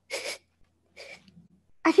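Two short, sharp sniffs through the nose about a second apart, someone trying to catch a scent. Speech begins near the end.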